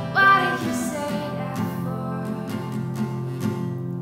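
A female voice singing a slow folk ballad over acoustic guitar, with a sung note sliding up about a quarter second in.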